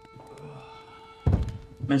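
A single heavy thunk about a second in as a man drops into a wooden chair at a table, just as a held background music note stops.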